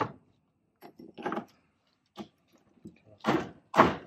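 A few light metal clicks, then two louder short scraping clunks near the end as a greased stub shaft is slid into a Toyota Tacoma front differential housing.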